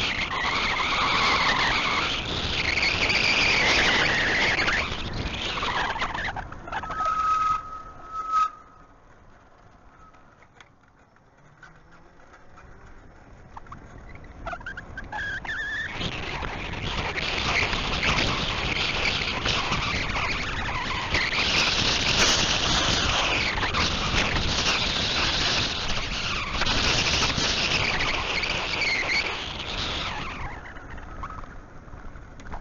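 Wind buffeting the microphone of a handheld camera on a moving electric bicycle, a loud rough rushing. About seven seconds in there is a brief steady high squeal. The rush then drops to a low hush for several seconds and builds back up to full loudness.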